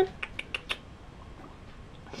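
Young guinea pigs making four brief, high, sharp sounds in the first second.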